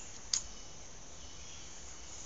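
Faint steady background hiss, with a single short click about a third of a second in as a tobacco pipe's stem is put to the mouth.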